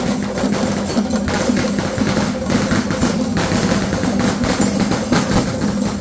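Percussion-led music: drums and small hand percussion playing continuously over a sustained low tone.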